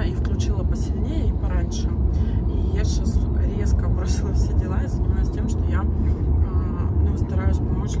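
Steady low road and engine rumble inside a moving car's cabin, under a woman's voice talking.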